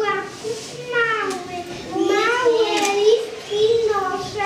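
Young children's voices speaking or reciting, high-pitched.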